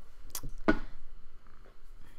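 A short, sharp mouth click, then a quick breath in from the narrator.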